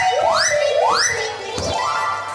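Electronic swooping sound effect from the stage sound system: a rapid run of identical rising pitch glides, about one every 0.4 s, stopping about one and a half seconds in.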